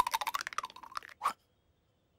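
Cartoon sound effect: a fast rattle of short clicks lasting about a second, ending with one last click, then silence.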